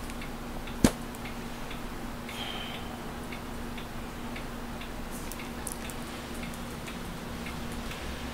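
A pause in a quiet room with a faint steady hum and faint, regular ticking, broken by one sharp click about a second in.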